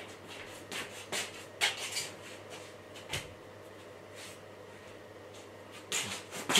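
Soft rustling and brushing of a padded snowman costume's fabric as its wearer turns and moves: a handful of brief rustles in the first half.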